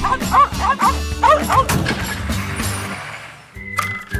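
Cartoon background music with a quick run of short, rising-and-falling yipping cries over the first second and a half; the music then fades away and a new tune starts near the end.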